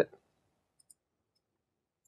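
Near silence with one faint click just under a second in, a computer mouse click.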